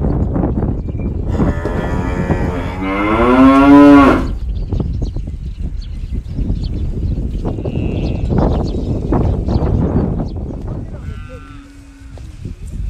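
A bovine in a grazing yak herd gives one long, wavering moo about a second in, lasting about three seconds; a shorter call follows near the end. Wind rumbles on the microphone throughout.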